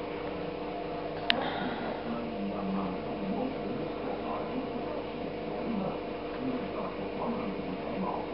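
A steady electrical hum with faint, low murmuring voices, and one sharp click about a second in.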